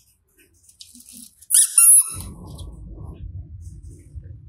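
A rubber squeeze toy squeaks once, loud and high-pitched, about a second and a half in. Low rustling handling noise follows.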